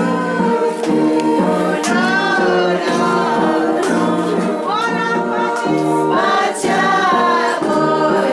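A group of women singing a hymn-like song together in unison, with long held notes.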